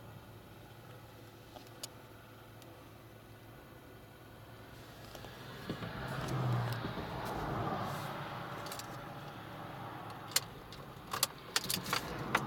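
2014 Kia Rio's four-cylinder engine idling quietly, heard from inside the cabin. A swell of rustling noise comes about halfway through, and a few sharp clicks and key jingles come near the end.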